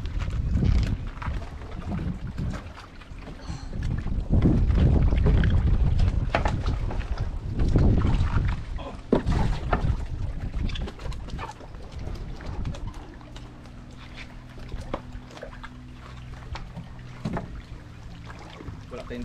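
Knocks and bumps of a person moving about in a wooden outrigger boat, over gusty wind rumbling on the microphone that is strongest in the first half. A faint steady low hum runs under the second half.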